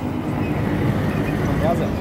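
Road traffic noise: a motor vehicle running close by, a steady engine and road noise, with a few faint words of speech near the end.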